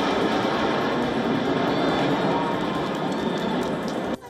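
Steady jet noise from a formation of Aermacchi MB-339 jet trainers flying low overhead.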